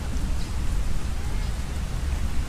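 Wind buffeting the camera microphone: a gusty low rumble with a hiss on top.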